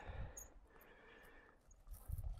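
Near silence, broken by a low rumble of wind on the microphone in the first half-second and again near the end.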